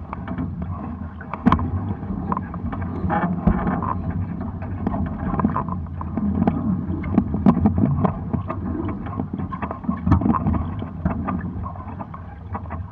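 Water washing and splashing against the hulls of a Hobie 16 catamaran sailing at about 4 knots in light wind, a steady noise broken by frequent small sharp knocks.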